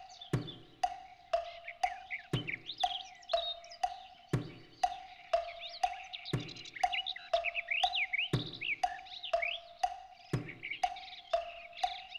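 Sparse percussion in the background score: a short, pitched wooden knock about twice a second, with a deeper stroke on every fourth beat, every two seconds. Birdsong chirps over the beat.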